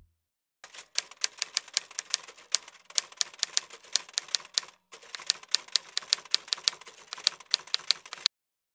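Typewriter sound effect: a fast, uneven run of sharp key clicks that starts just under a second in and breaks off briefly about halfway through.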